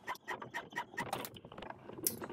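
Monofilament fishing line being sawed back and forth over an abrasive surface in an abrasion test: a fast, irregular run of faint scraping clicks.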